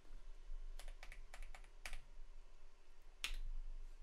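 Faint keystrokes on a computer keyboard. There is a quick run of about five separate key presses in the second second, then one more a little past three seconds in.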